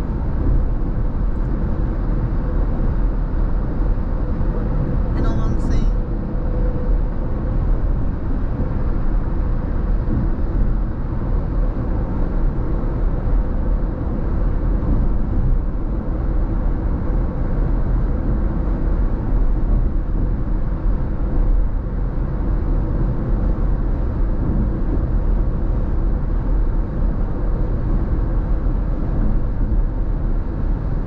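Steady road and tyre noise heard from inside a car's cabin at freeway speed, a low rumble with little change in level. A brief, sharp, high-pitched sound comes about five seconds in.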